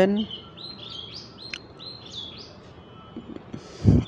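A bird chirping in the background: a run of short, high chirps, with a single click about one and a half seconds in.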